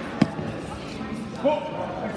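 A single dull thump about a quarter of a second in, the loudest sound here, then a short shouted call about a second and a half in, over the steady hum of a large gym.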